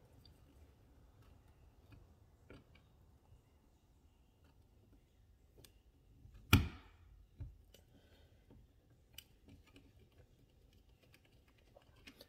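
Faint scattered clicks and taps of a small screwdriver and fingers working a terminal screw and wire on a plastic thermostat wallplate, with one sharper click a little past the middle.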